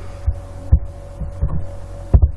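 Steady low hum with a thin steady tone above it, broken by about four dull low thumps, the clearest just under a second in.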